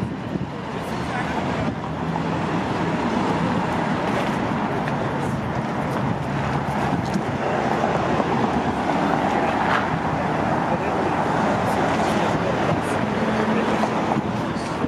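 Steady street traffic noise, with people talking in the background.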